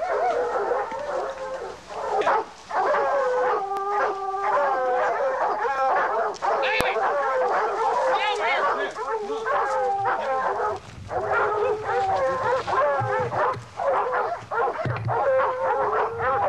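A pack of hunting dogs barking and howling over one another without a break: hog dogs baying a wild boar in the brush.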